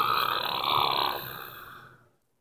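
A man's drawn-out, breathy vocal sound trailing off after a laugh, fading out over the last second.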